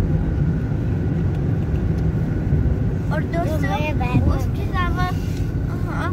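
Steady low rumble of a car driving, heard from inside the cabin, with a child talking over it about halfway through.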